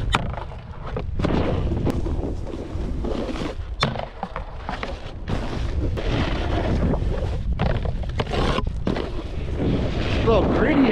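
Snowboard riding: a sharp knock as the board slides on a round rail at the start, then the board's edges scraping and chattering over firm, tracked groomed snow. Wind rushes on the camera microphone throughout.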